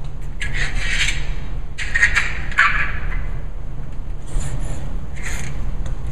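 Scraping on a concrete floor: four separate strokes, each under about a second long, over a steady low hum.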